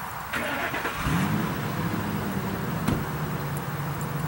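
An engine starts up about a second in, its pitch rising briefly and then settling into a steady idle.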